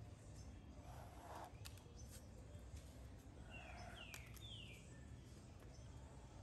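Near silence with a faint low background rumble. About three and a half seconds in come three short chirps, each falling in pitch, typical of a small bird calling.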